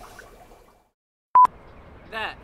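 Faint room sound fades out to silence, then a single short, very loud electronic beep of one steady pitch comes about one and a half seconds in, followed by faint outdoor background.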